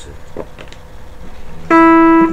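Electric guitar played through an amplifier: a few faint handling knocks, then near the end a single note struck hard and ringing out loud.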